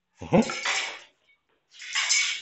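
Short metallic rattle from a guandao (long-handled bladed staff) as it is swung down, about two seconds in.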